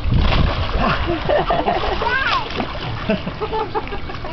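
A toddler splashing into swimming-pool water as an adult swings her in from the edge and catches her, with water sloshing around them.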